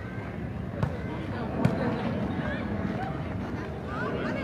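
Football kicked on a dirt pitch: two sharp thuds about a second apart, the second louder, over the murmur of players and spectators calling out.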